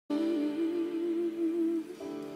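A woman's voice holding one long note with a slow waver, over a soft sustained backing chord; the note ends shortly before two seconds in.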